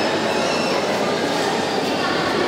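Steady hubbub of a crowd in a large hall, an even wash of noise with no single sound standing out.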